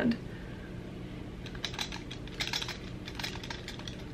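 Light clicks and clacks from a Marcel curling iron's metal clamp and handles as it is worked and spun in the hand to roll a curl, coming in scattered clusters from about a second and a half in, over a faint low hum.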